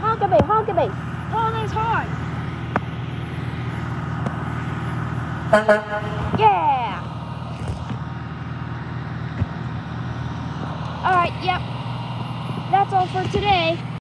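Garbage truck's diesel engine running steadily at idle. Over it, a high voice calls out in short wordless bursts at the start, around the middle and near the end.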